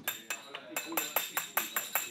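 Small hand hammer tapping rapidly on metal, about five blows a second, each blow leaving a short bright metallic ring.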